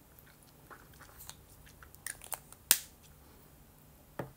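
Lips and mouth working close to the microphone as dark lipstick goes on and the lips are pressed together: a string of small wet clicks and smacks, with one sharper, louder click a little before the three-second mark.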